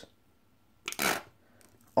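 A short, noisy squirt of ketchup from a squeezed plastic bottle onto a sandwich, about a second in.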